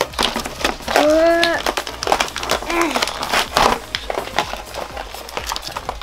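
Plastic toy packaging crinkling and crackling as it is pulled and torn open by hand, with a short vocal sound about a second in.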